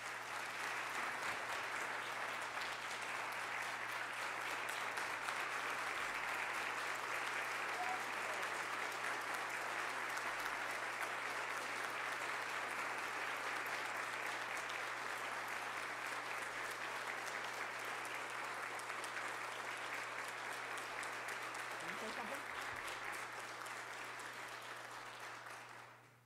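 An audience applauding steadily, a long round of clapping that eases slightly near the end and then dies away.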